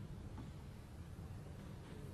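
Quiet snooker-hall room tone, a low steady hum, while the balls roll on the cloth after a shot, with one faint click of a ball contact about half a second in.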